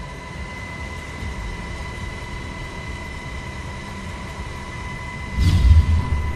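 A low, steady rumble under a held high tone, then about five and a half seconds in a loud whoosh sweeping down in pitch with a deep boom: a news-graphic transition sound effect.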